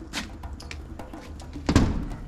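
Metal-framed glass door being tried by its handle: small clicks and rattles, then one loud clunk near the end as the door holds. It is locked.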